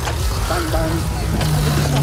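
A motor vehicle's engine running with a low rumble, with faint voices in the background.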